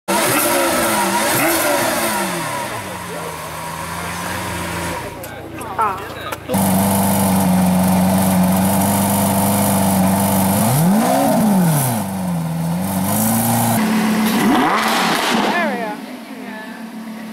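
Lamborghini Aventador V12 engines idling and being blipped: the revs rise and fall in quick throttle blips between stretches of steady idle, in two clips joined by a cut about five seconds in.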